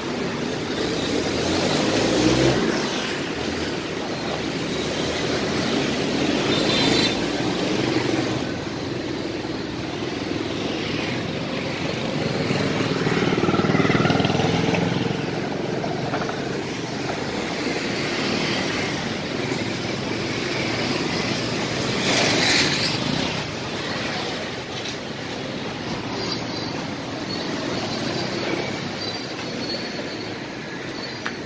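Busy street traffic: motorbikes and a city bus passing close by. A thin high steady tone comes in near the end.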